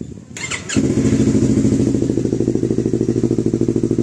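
Yamaha R3 parallel-twin engine breathing through a replica Yoshimura R77 exhaust, firing up under a second in and settling into a steady, evenly pulsing idle.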